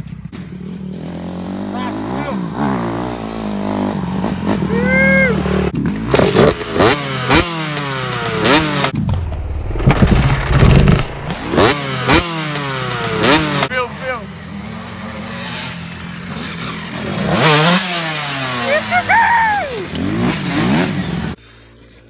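Dirt bike engines revving, their pitch rising and falling again and again, stopping abruptly near the end.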